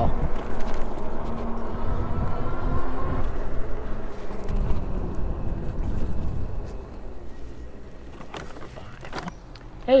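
Wind and rolling noise from riding a Hovsco HovBeta fat-tire e-bike, a low steady rush that dies down after about six seconds as the bike slows and stops. A few faint clicks follow, and a man's voice begins right at the end.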